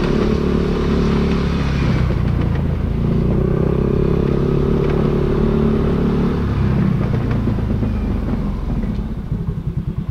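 Motorcycle engine running steadily while under way, under a haze of wind and road noise. Near the end the revs fall away and the engine drops to a slow, pulsing beat as the bike slows.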